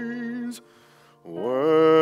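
A slow hymn sung with heavy vibrato: a long held note ends about half a second in, then after a short breath a new phrase slides up into another long held note.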